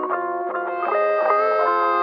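Background music: a guitar played through effects, holding sustained notes, some of which slide in pitch partway through.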